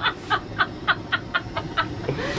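A person laughing hard in a run of short, even bursts, about four a second.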